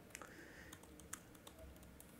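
Faint typing on a computer keyboard: a handful of light, irregularly spaced key clicks.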